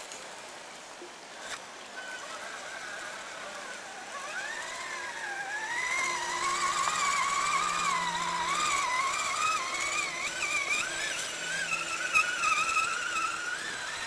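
Brushless electric motor and drivetrain of a Traxxas Summit RC monster truck whining as it crawls, the pitch wavering up and down with the throttle and getting louder about four seconds in.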